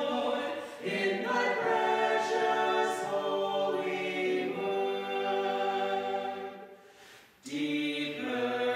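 A small mixed choir of four voices, men and women, singing in long held notes. The singing breaks off briefly near the end for a breath, then resumes.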